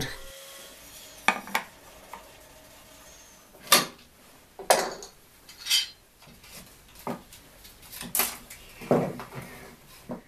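Scattered sharp knocks and clinks, about eight over the span, of wooden rim pieces and metal bar clamps being handled on a workbench.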